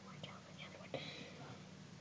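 Faint whispering from a person, with a soft click about a second in.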